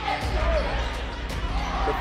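Basketball bouncing on a gym's hardwood court, with faint voices in the hall.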